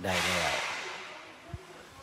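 A man speaking a few words in Thai, overlaid by a loud breathy hiss that fades within about a second, followed by a single soft low thump about halfway through.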